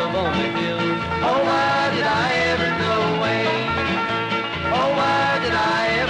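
Instrumental break in an old-time country gospel song: a lead instrument slides up into its notes over steady, evenly repeating bass notes and rhythm accompaniment.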